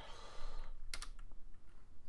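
Computer keyboard keys clicking faintly, a pair of quick key presses about a second in.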